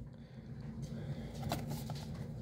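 Quiet handling of a cardboard trading-card box, with two faint taps about a second and a half in, over a steady low hum.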